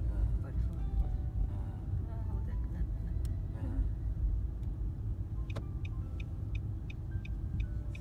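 Car cabin road rumble while driving, a steady low drone. About five and a half seconds in, a regular ticking starts, about three clicks a second.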